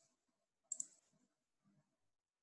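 Near silence broken by sharp clicks at a computer: a quick double click right at the start and another about three quarters of a second in, followed by faint low rustling.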